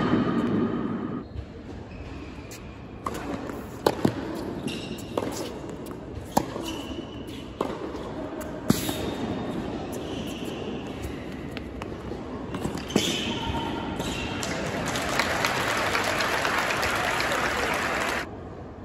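Tennis rally on an indoor hard court: sharp strikes of the racket on the ball and ball bounces, a second or so apart, with short shoe squeaks. In the last few seconds a crowd applauds, louder than the rally.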